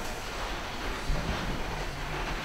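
Room noise in a lecture hall: a steady low hum and hiss with faint rustling and handling sounds, and a soft knock about a second in.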